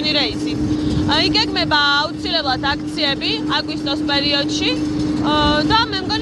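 A woman talking over a steady, even machine hum from an aircraft parked beside her.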